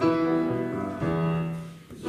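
Piano introduction to a choral song: a run of chords changing about every half second, the last one held and fading away near the end.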